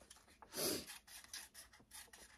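Scissors snipping around a printed sublimation transfer sheet: faint small clicks with paper rustling, and a brief louder rustle just over half a second in.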